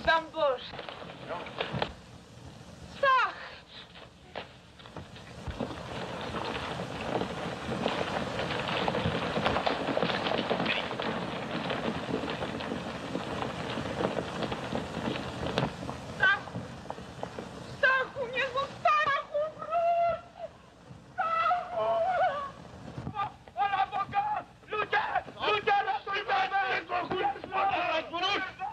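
A troop of cavalry horses riding off: a steady rushing noise of hooves on a dirt track. From about the second half on, several voices call out over it.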